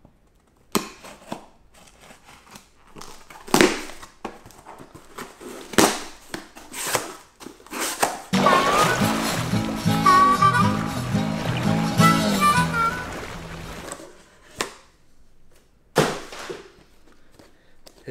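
A cardboard shipping box being opened and unpacked by hand: scattered rips, scrapes and knocks for about the first eight seconds. Then a short piece of music plays for about six seconds, and a few more handling knocks follow.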